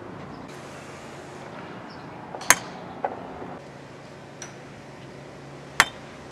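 Sharp clicks of golf clubs striking balls: a loud one about two and a half seconds in, a fainter one half a second later, and another loud one just before the end, when the boy's driver hits his ball. A faint steady hum runs underneath.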